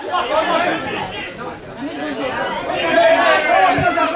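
Several voices talking and calling out over one another, the pitch-side chatter of players and onlookers at an amateur football match. It grows louder in about the last second.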